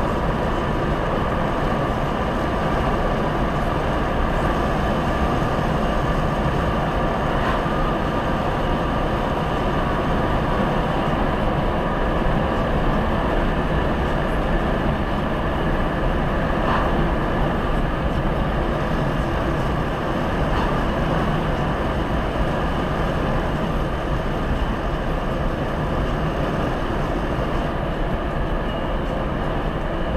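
Steady road noise inside a car cabin at about 90–100 km/h: tyre roar and engine drone, heard through the dashcam's microphone, with no change in pitch or level.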